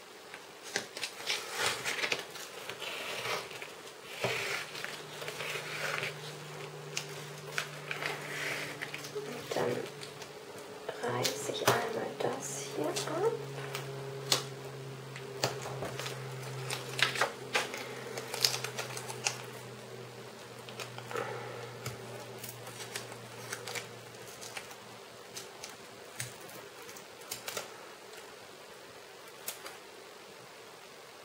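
Crinkling and crackling of a clear plastic sticker sheet as stickers are peeled from their backing and pressed onto a paper planner page, with many small clicks and taps. A low steady hum sounds from about four seconds in until near twenty-four seconds.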